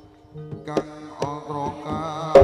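Live Javanese gamelan-style ensemble music: drum strokes under sustained melody lines that bend in pitch. It is soft for a moment at the start, then picks up again from about half a second in.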